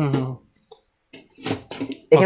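A man's voice trailing off at the start, then a pause broken by a few faint short clicks.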